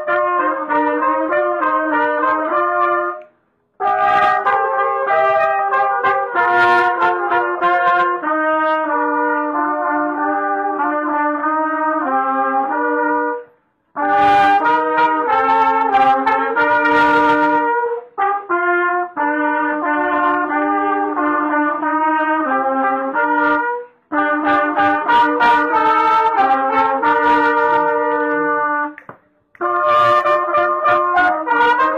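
A small group of trumpets and flugelhorns playing a tune together in several parts. The playing comes in phrases broken by short pauses, about every ten seconds.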